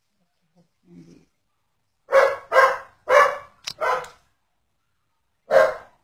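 A dog barking: four quick barks from about two seconds in, then one more near the end.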